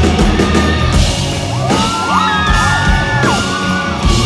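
Live rock band playing loud, with electric guitar and drums carrying on without a break. Around the middle, several high yells or whoops rise over the band for about a second and a half.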